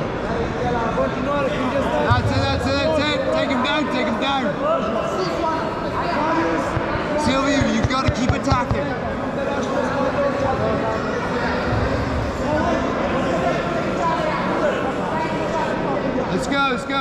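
Several people's voices talking and calling out at once in a large sports hall, with a few brief knocks partway through.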